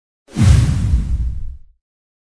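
A logo-reveal sound effect: a whoosh over a deep boom, starting about a third of a second in and fading away over about a second and a half.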